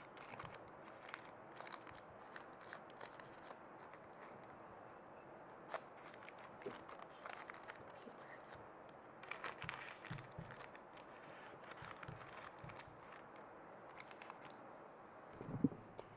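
Paper wrapper on a drinking glass being handled and pulled at, soft crinkling rustles and small clicks that come in short clusters, busiest about two-thirds of the way through and again near the end, over a steady faint background noise.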